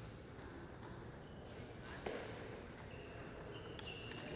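Table tennis ball clicking a few times off the bats and table as a point is served and played, faint over a steady background hiss.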